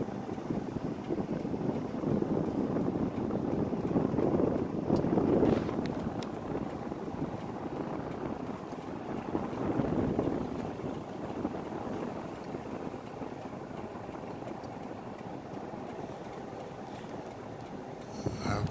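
Car driving along, a steady rumble of road and engine noise that swells about four to six seconds in and again around ten seconds.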